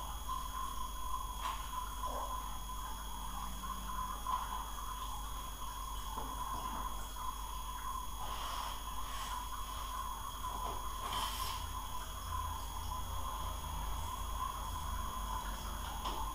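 Steady background hum and hiss of a home screen recording, with a few faint computer mouse clicks.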